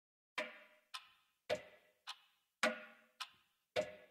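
Song intro of a clock-like tick-tock: evenly spaced clicks alternating louder and softer, a little under two a second, the louder ones with a short ringing tail.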